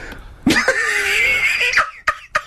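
A man's high-pitched, drawn-out laugh, almost a shriek, starting about half a second in and held for over a second before breaking off.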